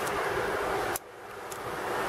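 Rustling of a trench coat's fabric and lining being handled close to the microphone, a steady hiss-like noise that cuts off abruptly about a second in and then comes back more faintly.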